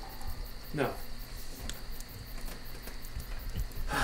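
Steady high, cricket-like insect chirring, with two brief soft rustles about a second and nearly two seconds in.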